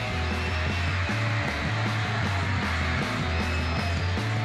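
Rock music with a steady bass line under a dense, noisy wash that fills the sound throughout.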